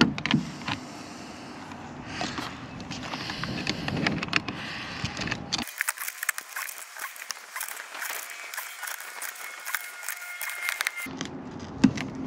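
Metal hand tools clicking, clinking and scraping on a brass hose fitting as a braided stainless water line is tightened with locking pliers and a wrench, with scattered sharp clicks and handling rustle. About halfway through, the sound turns thin and tinny.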